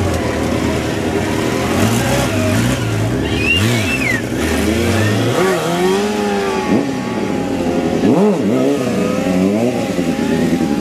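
Stunt motorcycle engines revving up and down over and over as the riders hold wheelies and stoppies, the pitch rising and falling in repeated sweeps. A brief high squeal comes about three and a half seconds in.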